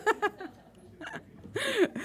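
A woman's short laugh and brief voice sounds close to a microphone, with a quiet gap in between.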